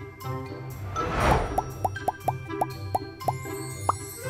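Light background music with a whoosh about a second in, followed by a quick string of about eight short rising 'bloop' pops, cartoon-style editing sound effects.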